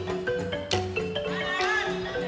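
West African percussion ensemble playing live: a balafon picks out a quick stepping melody over sharp djembe strikes and the deep, steady tones of dunun bass drums. Near the end a high wavering vocal cry rises over the music.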